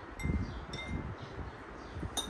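A metal spoon clinking against a dish twice, about half a second apart, each clink ringing briefly, with soft chewing sounds underneath.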